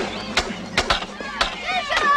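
Wooden staves striking each other in a mock fight: about five sharp wooden knocks at uneven intervals. Children's voices start near the end.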